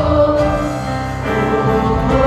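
Live worship music: a group of singers sings 'oh oh oh' in held notes over a band of bass guitar, keyboard and drums.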